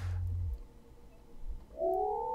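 Synthetic audio feedback from a filtered feedback loop in Ableton Live, with a high-resonance EQ band swept by a smooth-random LFO. A low rumble fades out in the first half second, then near the end a pitched feedback tone comes in and rises slowly.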